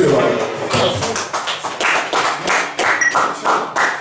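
Audience clapping with voices calling out, right after a song stops.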